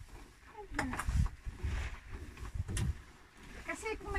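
Wind buffeting the microphone in uneven gusts, with a few sharp knocks and brief snatches of a voice.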